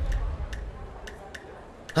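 Steady, clock-like ticking, about two to three sharp ticks a second, over a hushed background as the preceding music dies away.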